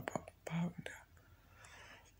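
A man's soft, close-miked voice: a brief low hum about half a second in, then faint breathy whispering.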